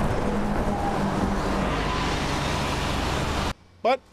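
San Francisco Muni city bus passing close by, its engine running with a steady low rumble over road and traffic noise. The sound cuts off suddenly about three and a half seconds in.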